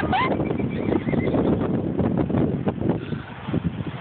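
Recorded horse sound effects played through the speaker of a sensor-triggered singing horse statue: a whinny tailing off at the start, then a run of galloping hoofbeats.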